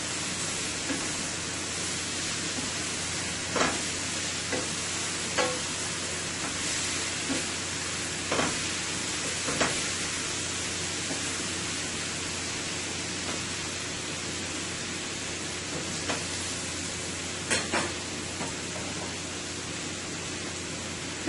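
Sliced bell peppers and carrots sizzling steadily in oil in a stainless steel frying pan, with a few short knocks of a wooden spoon against the pan as they are stirred.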